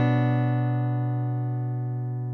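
Instrumental backing track with no vocals: a single guitar chord rings out and slowly fades, with no new notes struck.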